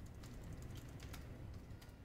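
Faint, irregular clicks of typing on a computer keyboard over a low, steady room hum.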